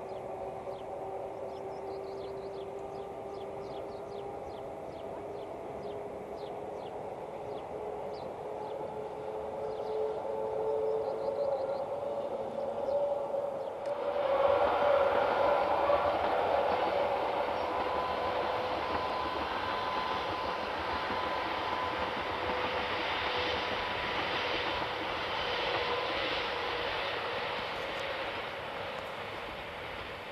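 Rhaetian Railway electric locomotive and red passenger coaches on the metre-gauge Albula line. At first the train is heard from afar as a steady electric whine that rises slightly in pitch. About halfway through it becomes much louder and closer, with wheel-and-rail rumble under the whine, then fades toward the end.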